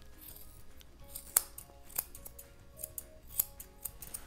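Curved Japanese grooming scissors snipping a small dog's facial hair: a string of sharp, irregular snips, the clearest about a second and a half in. Faint background music plays underneath.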